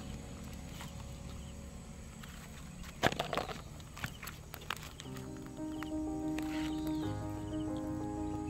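A few short rustles and clicks of twigs and stones being stirred on dry, rocky ground. Background music with sustained notes comes in about five seconds in.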